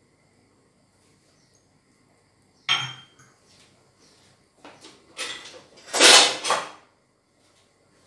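Kitchen handling sounds: a drinking glass knocked down on the counter with a short ring about three seconds in, then several louder clattering knocks and scrapes, loudest about six seconds in.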